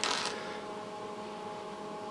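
Steady hum with a few faint steady tones from the running bench test equipment, the cooling fan and electronics of an HP 8720 network analyzer.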